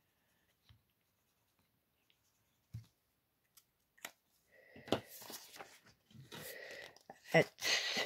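Prop banknotes and a clear plastic binder pouch being handled: a few faint taps, then crinkling and rustling through the second half, loudest near the end.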